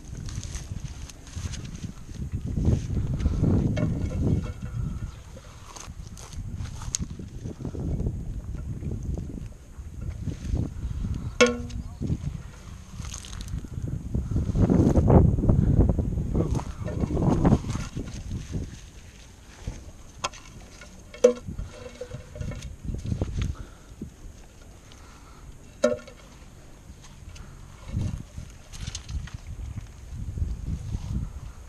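Wind rumbling on an outdoor camera microphone, swelling and fading in gusts, with a few brief sharp knocks.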